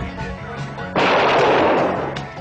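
A movie-trailer sound effect of a sudden loud blast about a second in, fading over about a second, over held music notes.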